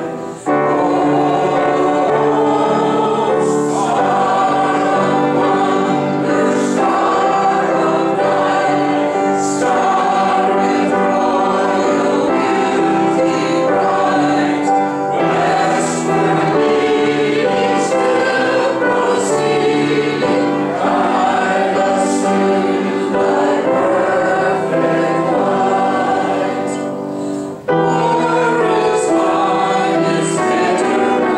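Congregation singing a hymn together, accompanied by piano and violin, with a brief break between phrases just after the start and again near the end.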